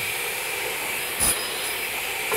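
Steady machine noise with a constant high whine, and a single short knock about a second and a quarter in.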